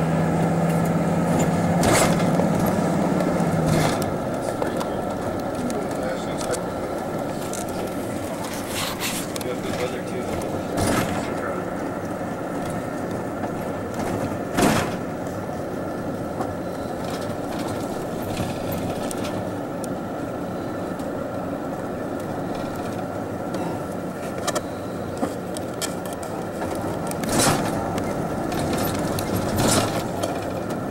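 Steady road and engine noise heard from inside a moving vehicle's cabin, with a low hum that drops away about four seconds in as the vehicle eases off. A few sharp clicks and knocks come through now and then, the clearest about halfway and near the end.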